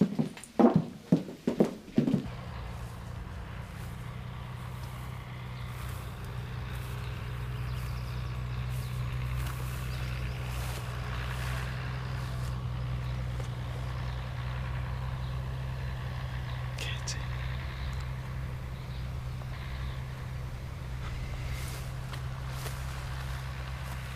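A brief voice sound, then from about two seconds in a steady low drone of a tractor engine working in the distance, with open-air background noise.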